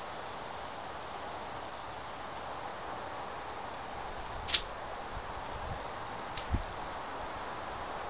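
Scissors cutting black duct tape: a sharp click about halfway through, then a smaller click and a dull knock about two seconds later, over a steady background hiss.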